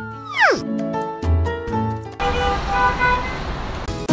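A falling-pitch sound effect that drops away sharply about half a second in. Background music follows: a short run of notes, turning to a rushing, noisy swell with higher notes from about two seconds in.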